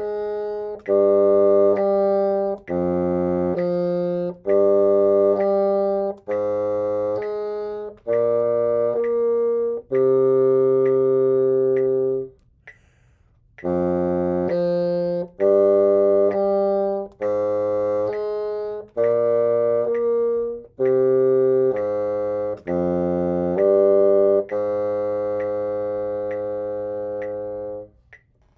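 Solo bassoon playing a slow octave-slur exercise: notes of about a second each slurred up and down by an octave, the upper notes reached by flicking and half-holing. It runs in two phrases, with a breath break a little before the middle, and ends on a long held note that fades away.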